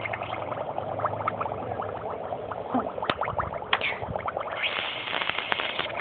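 Sparkler burning under water, fizzing with a dense crackle of small rapid pops and one sharper crack about halfway; the hiss grows brighter and louder near the end.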